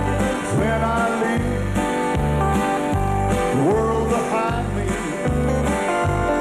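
Country gospel music: piano, guitar and bass playing with a steady beat.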